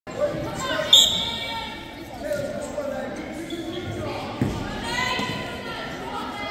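A referee's whistle blows sharply about a second in, starting the wrestling bout. Voices shout in the echoing gym, and a thud on the mat comes about four and a half seconds in.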